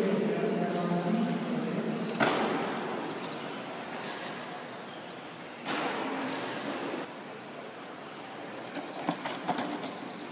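Electric RC cars running on a carpet track, with a car passing close by about two seconds in and another at about six seconds, each pass a loud rush of motor and tyre noise that fades away. A few sharp ticks come near the end.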